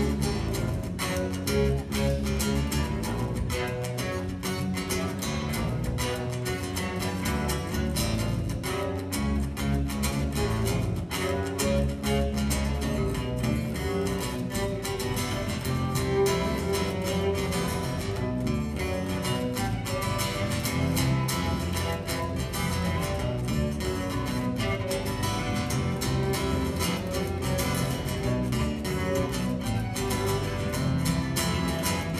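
Live instrumental band music: a bowed cello playing over a steadily strummed acoustic guitar, with an even rhythm throughout.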